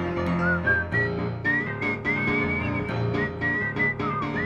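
Grand piano played in New Orleans style, with a whistled melody over it that comes in about half a second in, sliding up and holding high notes.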